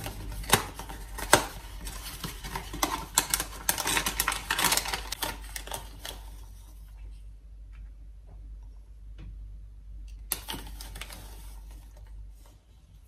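A cardboard cocoa box being opened and its inner paper bag crinkling and rustling as it is pulled out and opened, in quick crackling bursts. Quieter after about six seconds, with a few soft ticks, then another short burst of paper rustling a little after ten seconds.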